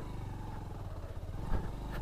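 Bajaj Pulsar 150's single-cylinder engine running steadily while the bike is ridden slowly over a gravel lane, with one brief knock about one and a half seconds in.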